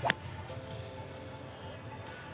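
A golf club striking a ball on a full swing: one sharp, short crack about a tenth of a second in.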